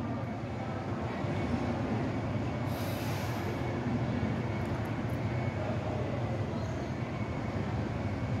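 Steady low rumble with hiss, the even background noise of a machine or a moving vehicle, with a brief louder hiss about three seconds in.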